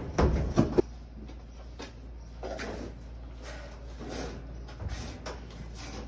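Knocks and scuffs against the metal floor and sides of a livestock trailer while a calf is held for dehorning. A cluster of louder knocks comes in the first second, then softer scattered knocks and scrapes.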